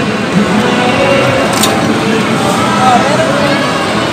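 Loud, steady arcade din: electronic game-machine music mixed with the background chatter of a crowd.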